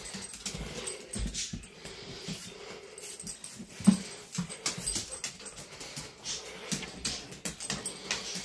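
A dog sniffing around as it searches, with scattered light clicks of its claws on a hardwood floor.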